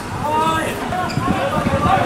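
Players' voices calling out on a football pitch, with a run of dull low thuds underneath, thickest in the second half.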